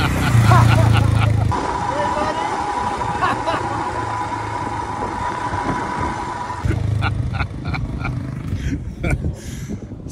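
Royal Enfield Himalayan's single-cylinder engine running as the motorcycle pulls up, loudest in the first second or so, then idling under voices and laughter. A steady high-pitched tone runs through the middle seconds.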